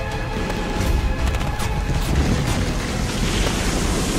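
Dramatic trailer score mixed with deep booming sound effects and a dense wash of noise, with a few sharp hits in the first couple of seconds.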